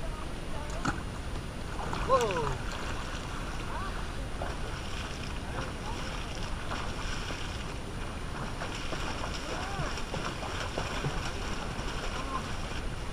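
Water splashing and sloshing in a hot-spring pool as people wade through it and kick it up, over a steady low rumble of wind on the microphone.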